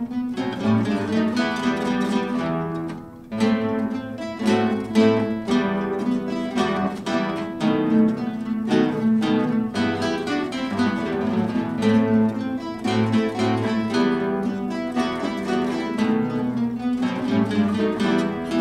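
Ensemble of many nylon-string classical guitars playing together, plucked melody and accompaniment in several parts, with a brief drop in loudness about three seconds in.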